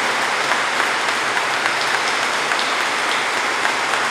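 Audience applauding, a dense, steady clapping that holds without a break.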